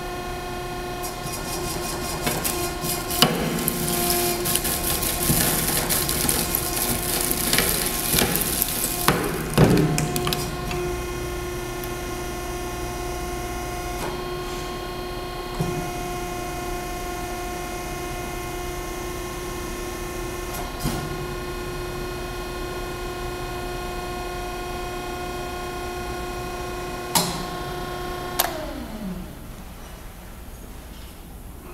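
EMC901 electric motor wrecker running, its hydraulic pump motor giving a steady whine, while the cutting blade presses into an electric motor stator with loud crunching and sharp cracks of metal for the first ten seconds or so. A few single cracks follow, and near the end the pump motor is switched off and its whine falls in pitch and dies away.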